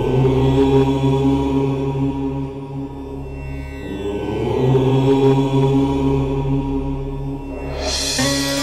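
A deep, long-held chant of the syllable Om over a steady low drone. It swells twice, once near the start and again about halfway through.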